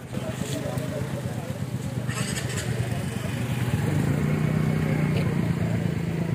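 An engine running, building in level and loudest in the last two seconds, under the chatter of onlookers' voices.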